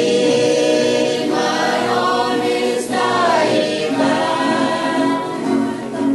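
Saipanese folk song sung in chorus by a youth choir, the voices holding and gliding between notes together.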